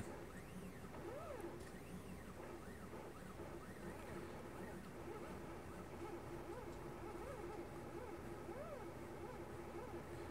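Stepper motors of a GRBL-driven CNC laser engraver moving the axes through a raster job: faint whining tones that rise and fall in pitch over and over as the motors speed up and slow down, over a steady hum.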